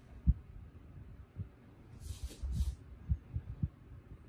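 Epoxy resin being poured from a plastic gallon jug into plastic measuring cups: the pour itself is near-silent. It gives a scattered series of soft, low thumps as the jug and cups are handled on the table, with two brief hisses about two seconds in.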